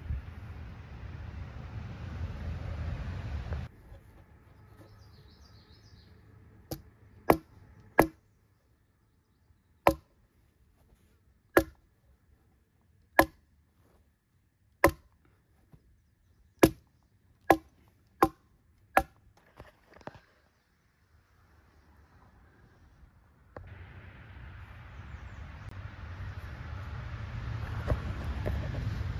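A staple gun firing about a dozen times, one shot every second or so, driving staples through carpet into a wooden boat-trailer bunk board. A steady rushing noise comes before and after the run of shots.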